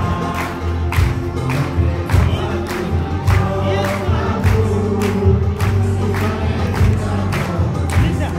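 A group singing a worship song together over loud music with a steady beat, about three beats a second.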